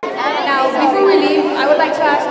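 A girl speaking into a handheld microphone, her voice carried by the hall's sound system; it cuts in suddenly at the start.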